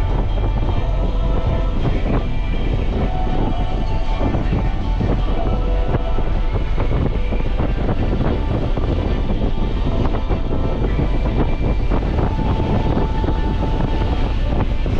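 Steady low drone of a Nissan 300ZX's V6 engine and road noise while driving, with no change in pace.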